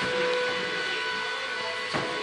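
A steady machine hum with an even pitch.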